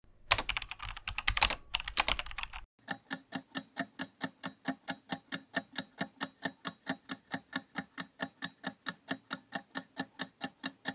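A keyboard-typing sound effect, a rapid clatter of key clicks for about two and a half seconds, then a countdown-timer ticking sound effect, about three even ticks a second for the rest of the time.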